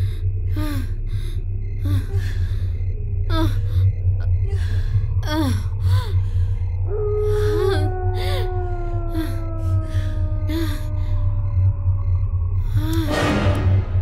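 A woman gasping and moaning in short, repeated breaths, over a low droning horror film score. Midway a long, slowly falling held note comes in, and a short noisy burst sounds near the end.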